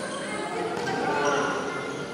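Badminton players' footsteps and thuds on a court mat, with short high-pitched shoe squeaks, over voices echoing through a large sports hall.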